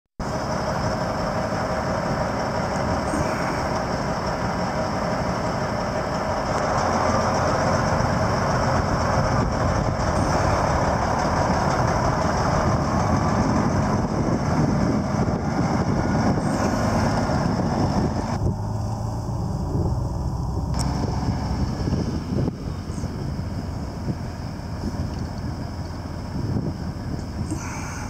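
An International 9400 semi tractor's 12.7-litre Detroit Diesel Series 60 engine running as the truck drives past, getting louder as it goes by, then fading as it pulls away.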